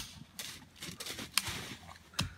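A few sharp toy-gun cracks, the loudest right at the start and fainter ones later, over a soft rustle of dry leaves as someone runs through them.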